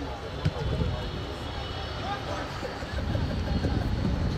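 Sound of an outdoor football match: scattered distant voices and shouts over a steady low rumble, with one sharp knock about half a second in.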